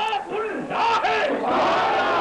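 Crowd of men chanting together, many voices loud and overlapping, with a brief dip just after half a second before the voices swell again.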